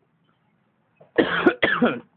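A person coughing twice in quick succession, loud and close.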